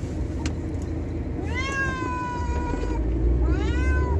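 A cat meowing twice inside a car: a long, drawn-out meow about one and a half seconds in, then a second, rising meow near the end, over the car's low rumble.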